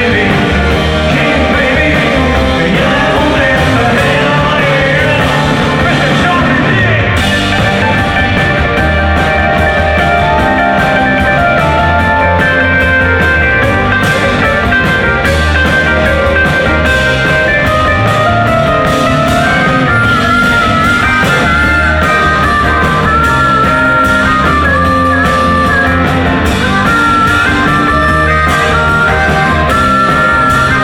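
Live rock band playing loudly, with electric guitars and singing over a steady beat.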